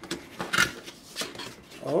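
Cardboard packaging handled by hand: the box's sleeve and inner tray slide and scrape against each other, with a few short, sharp rubs.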